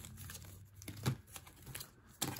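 Foil wrappers of Upper Deck Trilogy hockey card packs crinkling faintly as the packs are handled and picked up, in a few scattered crackles.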